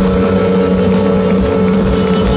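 Live rock band playing loudly through a festival PA: held electric guitar tones pulsing rapidly with tremolo over bass and drums, heard from the crowd.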